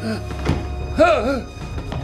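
Low, dark film-score drone with a single dull thunk about half a second in, then a short wordless vocal cry about a second in.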